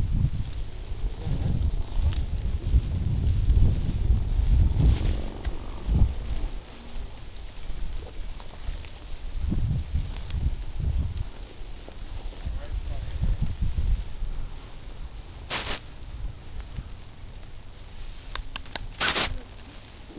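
Two short blasts of a high-pitched dog-training whistle, about three and a half seconds apart near the end, over rumbling noise on the microphone.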